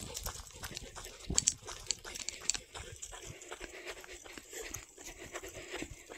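Footsteps of a walker and a Belgian Malinois crunching on a dry dirt trail, a steady run of soft irregular steps, with the dog panting.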